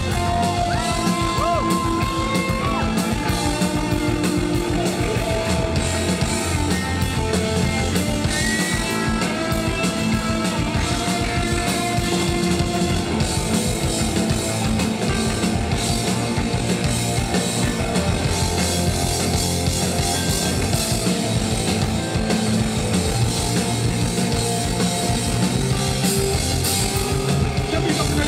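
Live rock band playing loudly on stage: electric guitar and drum kit, mostly an instrumental passage between sung lines.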